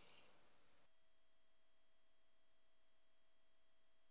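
Near silence, with a few faint steady electronic tones.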